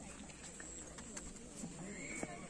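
Faint outdoor background voices of people talking at a distance, with a few light clicks mixed in.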